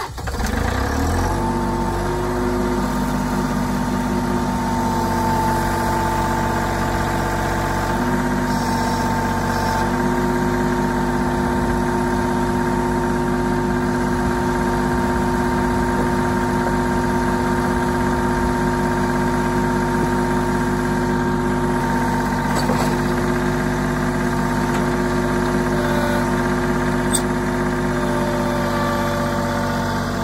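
John Deere compact tractor's diesel engine running steadily, its pitch shifting slightly a few times.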